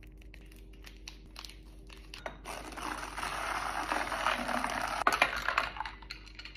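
A plastic stick packet of greens powder being crinkled and torn open, with a rush of crinkling and pouring from about halfway in that lasts a couple of seconds. A few sharp clicks near the end as the drink is stirred in a glass with ice.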